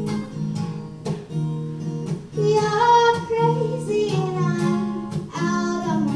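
Acoustic guitar strummed in a steady rhythm, with a young girl's voice singing the melody from about two seconds in.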